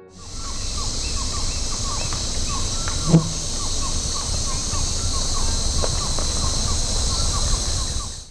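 Forest ambience: a steady high insect drone, with a bird repeating a short chirp about three times a second over a low rumble. A brief louder low call or grunt stands out about three seconds in.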